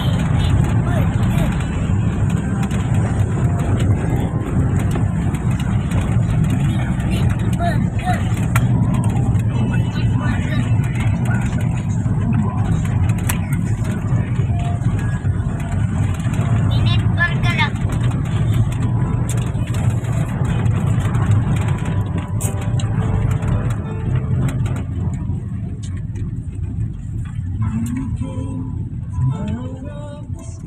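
Steady road and engine noise inside the cabin of a moving passenger van: a continuous low rumble that eases somewhat near the end.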